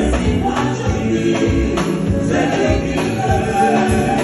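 Live gospel music: voices singing over a band with electric guitar and a steady beat.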